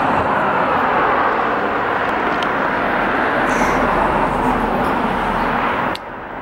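Steady street noise of passing traffic, with a low rumble that swells about halfway through.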